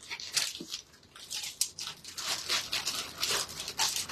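Packaging and fabric rustling and crinkling in a quick, irregular series of short rustles as a garment is handled and unpacked.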